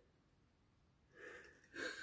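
Near silence, broken by a faint sharp intake of breath a little over a second in and another just before the end.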